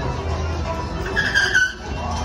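Funfair noise around a swinging boat ride: music playing over a steady low hum, with a short high squeal about a second and a quarter in.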